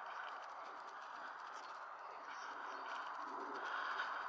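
Birds calling over a steady, even hiss, with a low cooing call a little after three seconds in.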